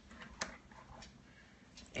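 Quiet room tone with one light click about half a second in and a couple of faint ticks near the end, from things being handled on a table.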